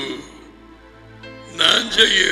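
A man's voice through a headset microphone, trailing off at the start and starting again near the end, with soft background music heard in the pause between.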